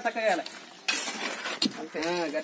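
A short-handled hoe striking and scraping stony soil in a few sharp strokes as a man digs, with a voice briefly at the start.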